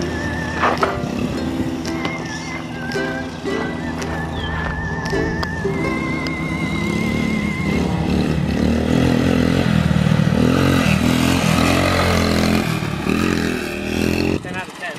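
Background music playing over a Honda CT70 mini bike's small four-stroke single-cylinder engine running as it is ridden, the engine rising and falling in pitch in the second half.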